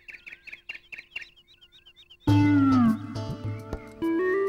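A small bird chirping in quick repeated notes for about two seconds. Then music starts loudly with a falling note over a steady bass.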